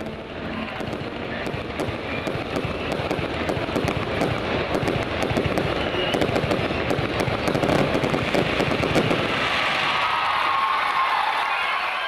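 Aerial fireworks going off: a dense, unbroken run of rapid crackling pops.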